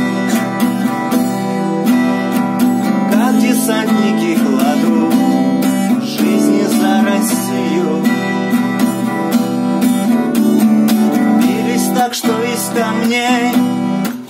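Acoustic guitar strummed in a steady rhythm of chords, an instrumental passage between sung verses.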